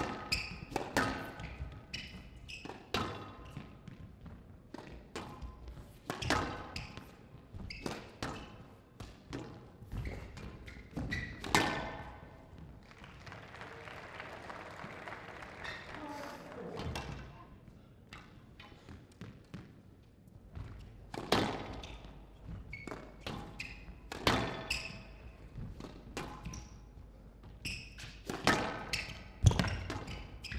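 Squash rallies: a rubber squash ball struck by rackets and smacking off the glass and front walls in a quick irregular series of sharp knocks. A short spell of audience applause comes partway through, after a point is won.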